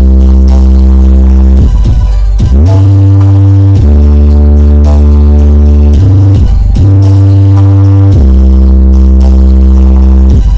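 Extremely loud music from the Aeromax truck-mounted wall of loudspeakers, playing long held deep bass notes that change pitch every one to two seconds with short sliding dips between them. It is loud enough to pin the recording at its maximum level.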